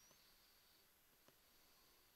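Near silence: room tone, with two faint ticks about a second apart.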